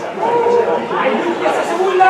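Several voices shouting and talking over one another at a football match, a steady chatter of calls with no clear single speaker.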